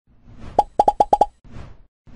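Animated-intro sound effects: a brief rising swell, then a quick run of six short pitched pops, followed by a soft whoosh.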